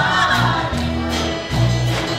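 A women's vocal group singing a praise song together, backed by a band: drums and held low bass notes that change every half second or so.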